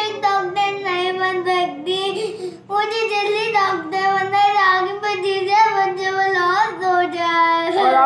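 Young girl singing in long, wavering, drawn-out notes, with a short break about two and a half seconds in.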